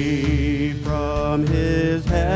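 Live church worship band playing a slow hymn, with a singer holding long notes over guitars and drums.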